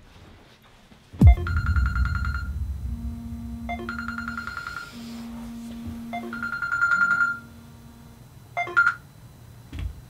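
A thump about a second in, then a phone alarm ringtone going off: a short electronic tone pattern repeated three times a couple of seconds apart over a low hum, ending with a couple of short sharp sounds near the end.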